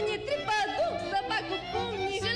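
Young women singing a Romanian folk song at a microphone, accompanied by a folk orchestra with violins; the sung melody bends and glides in pitch throughout.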